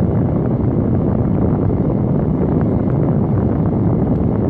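Steady low rumble of car cabin noise, with wind buffeting the microphone.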